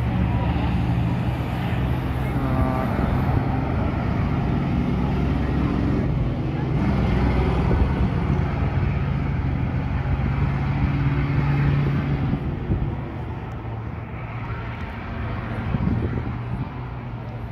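School bus engines running steadily as the buses circle the track, a low, even hum with crowd voices over it. The engine sound drops off somewhat about twelve seconds in.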